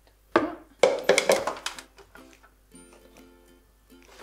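Light background music of plucked-string notes: a few quick plucks in the first second and a half, then held notes.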